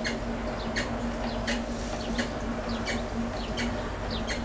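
Potter's wheel running with a steady low hum as a clay bowl spins under the potter's fingers. Over it a short high chirp repeats about every three-quarters of a second.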